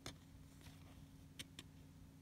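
Near silence: a faint steady hum with four soft clicks of small cardboard trading cards being handled between the fingers, the last two close together.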